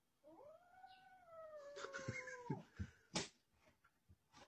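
A kitten's single long, drawn-out meow lasting about two seconds, its pitch rising at first and then slowly falling. A few sharp knocks follow near the end, the last of them the loudest sound.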